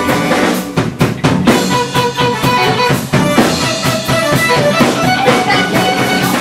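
Live pop band playing, with drum kit, bass and keyboard: a quick run of drum hits about a second in, then the full band carries on.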